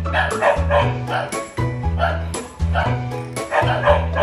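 A dog barking, over background music with a steady beat and bassline.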